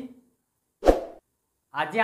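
A single short, loud pop, the sound effect of an animated on-screen subscribe button appearing, between words of a man's speech.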